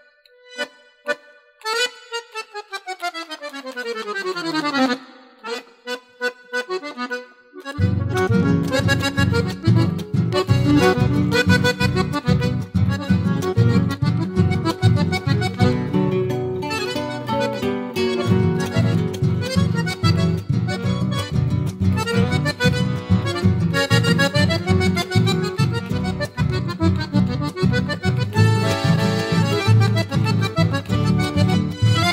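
Instrumental opening of a rasguido doble played by a chamamé group. An accordion alone plays short detached notes and a long falling run. About eight seconds in, the full band comes in with bass and guitars, and the accordion leads over a steady dance beat.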